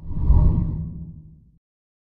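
A deep whoosh sound effect for a TV news channel's animated logo sting. It swells fast and fades away over about a second and a half.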